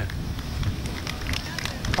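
Outdoor road ambience from a live road-race broadcast feed: a steady low rumble of street noise with a few faint ticks.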